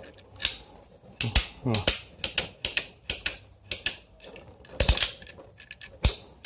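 SKILFUL 7-speed rapid-fire bicycle trigger shifter being worked by hand: a string of sharp, irregularly spaced ratchet clicks as the levers index it through the gears.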